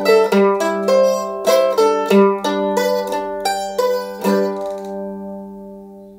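F-style mandolin picking a closing phrase of single notes over a ringing low note, then a last strike about four and a half seconds in that rings out and fades away.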